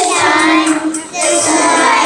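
Children's choir singing together in unison, holding long notes, with a brief break between phrases about a second in.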